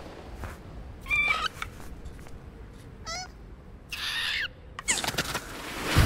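Three short, high, squeaky animal-like calls from a cartoon character, each with a wavering pitch, about a second apart, followed near the end by a swelling rush of noise.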